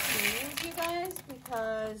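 Dry pinto beans pouring from a plastic bag into a plastic bowl, a rattling rush that fades out in the first half second, followed by a woman talking.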